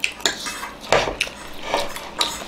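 Forks clinking and scraping against plates in a run of short, irregular clicks while people eat, with the noisy slurp of noodles being sucked up.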